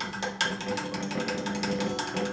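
A one-inch paint brush being scrubbed hard in a container of paint thinner: a fast, even rattle of clicks. Soft background music with held notes plays under it.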